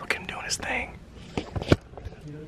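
A person whispering briefly, followed by two sharp clicks near the end.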